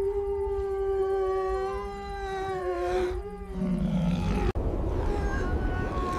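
A wild animal howling: one long, steady call of about three seconds that dips in pitch at the end, followed by a lower, shorter call and fainter calls, over a low rumble.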